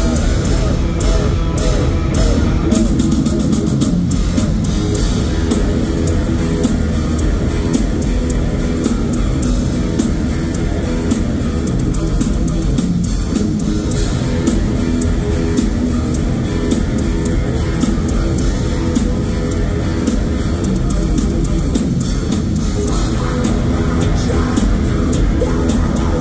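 Heavy metal band playing live at full volume: distorted electric guitars, bass and drums in an instrumental stretch, heard from among the crowd in an arena.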